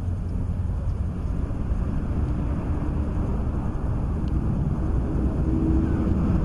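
Wind buffeting the built-in microphone of a pocket camcorder outdoors: a steady, loud rumble, with a faint steady hum joining in about halfway through.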